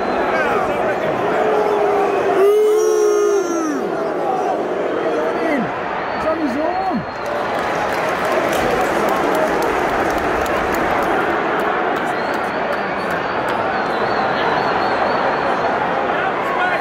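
Large football stadium crowd: a steady din of many voices, with individual shouts rising out of it. The loudest shout comes close by about two and a half to four seconds in.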